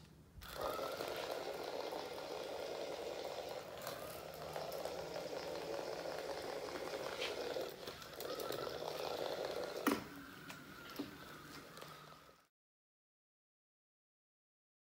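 Small geared DC motors of a battery-powered robot car, driven through an L298N motor driver, running with a steady whine. They stop briefly about eight seconds in, then run on, with a sharp click near ten seconds, and the sound cuts off suddenly near the end.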